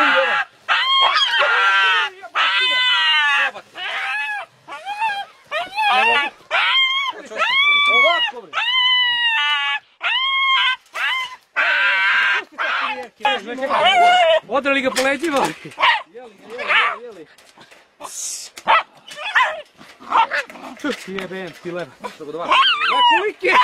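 Hunting dogs whining and yelping at a burrow holding their quarry: a string of short, high-pitched cries, each rising and falling, one after another. Shovel scrapes and knocks join in around the middle.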